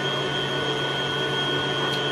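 A steady motor hum with a constant high whine from an appliance running in the kitchen.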